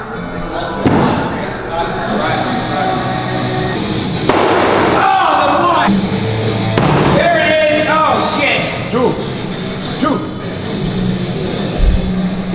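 Throwing axes hitting a wooden target board with a few sharp thuds, over background music and excited shouts.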